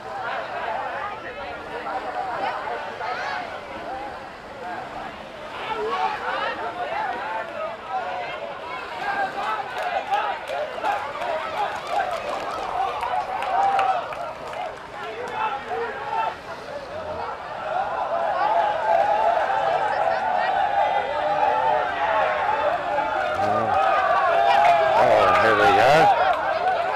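A crowd of many people talking and calling out at once, a mix of overlapping voices with no single clear speaker, growing louder over the last several seconds.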